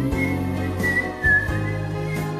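A whistled melody over the song's backing music: one clear, high line stepping between a few notes, above steady bass and chords.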